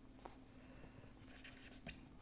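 Near silence with a few faint ticks and scratches of a stylus writing on a tablet screen.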